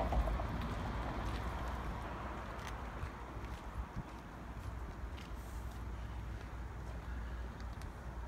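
Quiet outdoor background noise: a steady low rumble with a few faint taps and clicks.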